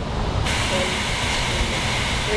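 Pressurized sprayer wand discharging a fine liquid spray at about 90 psi into a clear plastic shield tube over leaf litter: a steady hiss that starts about half a second in, over a low steady rumble.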